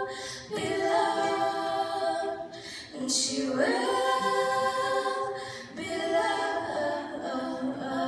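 Two female voices singing a pop melody in long, held notes, with new phrases starting about half a second, three and a half and six seconds in.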